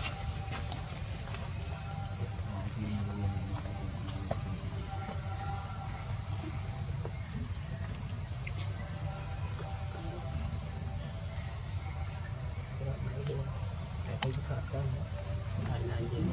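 A steady, shrill insect chorus holding two high pitches without a break, over a low background rumble.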